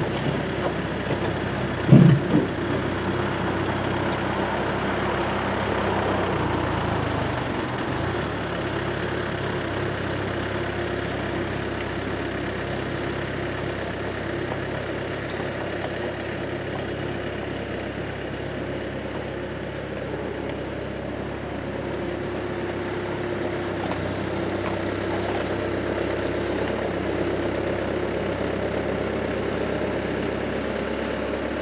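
Bobcat S220 skid-steer loader's diesel engine running steadily under load as it scoops and carries a bucket of soil, with one loud clunk about two seconds in.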